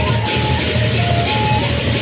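A Sasak gendang beleq ensemble playing. The large barrel drums are beaten under continuous clashing cymbals, while a wind instrument carries a melody that moves in steps between held notes.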